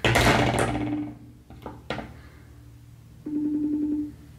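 A phone call being placed on speaker: a burst of sound fades over the first second, a sharp click comes about two seconds in, and a steady ringing tone sounds near the end.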